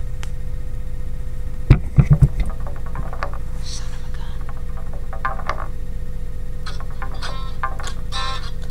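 Steady low electrical hum, with a quick cluster of about four loud thuds about two seconds in.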